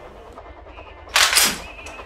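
Low room tone, then about a second in a sudden, loud burst of noise that dies away within half a second.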